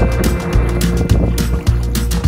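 Background music with a steady drum beat and a bass line moving in held notes.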